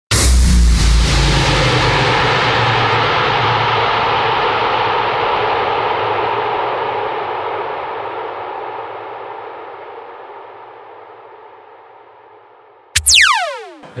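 Synthesized logo-intro sound effect: a sudden hit with a deep boom opening into a long swell of sustained synth tones that slowly fades away, then, about a second before the end, a sharp hit with a steeply falling pitch sweep.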